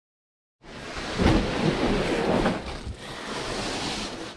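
Large cardboard boxes being handled and shifted, rustling and scraping, starting about half a second in with a heavy thump soon after.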